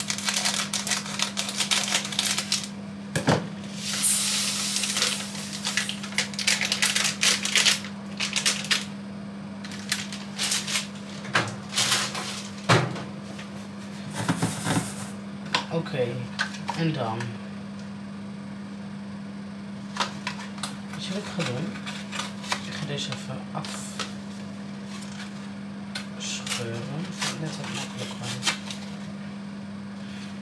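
Crinkling and rustling of plastic and cardboard food packaging being handled, opened and torn by hand, in irregular bursts over a steady low hum.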